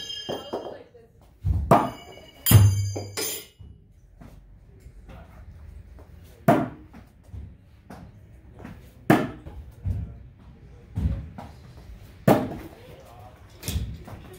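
Thrown metal throwing weapons striking a wooden target board and falling to the floor: three quick hits with a metallic clang and ring about two seconds in, the loudest with a heavy thud, then single sharp knocks every second or two.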